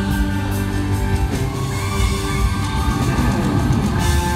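Electric guitar played loud over a live rock band, with held notes over bass and drums through a concert sound system.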